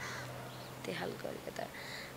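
A crow cawing, with soft speech in the background.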